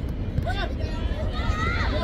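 Children's voices shouting short, high-pitched calls during a youth football match, one about half a second in and a longer one near the end, over a steady low outdoor rumble.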